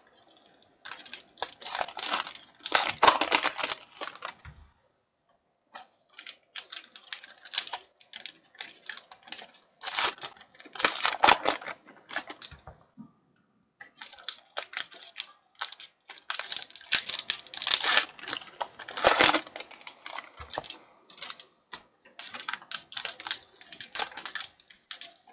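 Baseball card pack wrapper crinkling as it is torn open, and stiff 2020 Topps Heritage cards rustling and clicking as they are shuffled through by hand. The sound comes in irregular bursts with two short pauses.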